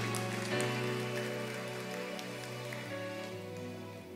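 Soft instrumental music holding sustained chords under scattered applause from a congregation, the applause fading away.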